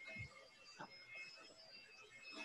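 Near silence: faint room tone over the video call, with a brief soft "oh" near the start.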